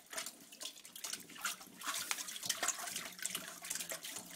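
Water in a toilet bowl splashing and sloshing in quick, irregular splashes as a dog digs at it with its head down in the bowl.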